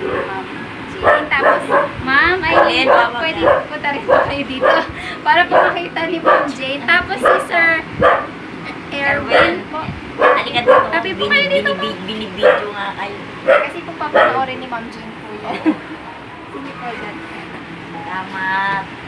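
A dog barking repeatedly in many short, sharp barks from about a second in until a few seconds before the end, over people talking.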